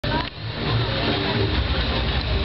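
Fairground background noise: a steady low machine rumble under a busy mix of fainter sounds.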